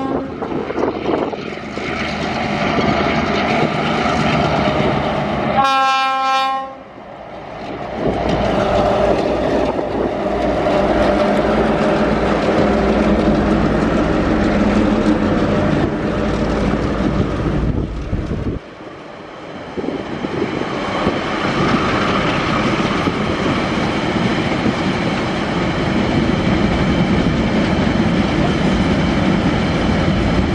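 TasRail diesel locomotives 2011, 2010 and 2009 pass with engines running, sounding a short horn blast about six seconds in. A long train of empty ore wagons then rolls by, with steady wheel noise on the track.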